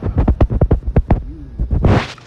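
A rapid, irregular run of loud, deep thumps, about ten in under two seconds, ending in a short, broader rush.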